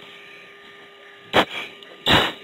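Steady hiss and hum of an F-16's cockpit intercom, with one short, loud breath into an oxygen-mask microphone about one and a half seconds in, typical of a G-straining breath as the jet pulls up.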